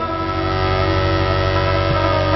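A steady chord of several tones held unchanged for about two and a half seconds, dropping away as the voice returns.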